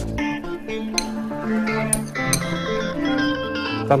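Background music with steady held notes, including a plucked-string instrument.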